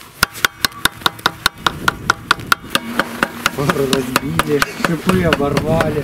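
A screwdriver knocks and scrapes packed snow and ice out of the toothed belt drive on an e-bike hub-motor wheel, clearing the clogged drive. It is a quick run of sharp knocks, about five a second, that thins out after about three seconds.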